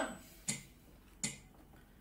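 Two sharp hand claps about three-quarters of a second apart, with quiet room tone between.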